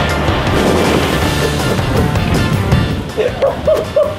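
Music playing over a loud, steady rush of noise that sets in suddenly at the start, from a liquid nitrogen and boiling water steam explosion and its billowing vapour cloud. A brief voice comes in near the end.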